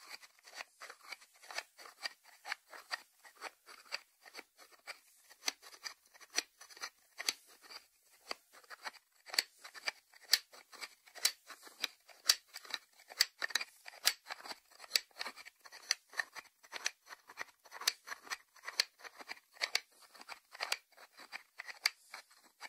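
Fingers tapping on the lid of a white ceramic salt dish: a long, uneven run of light, sharp clicks, about three a second.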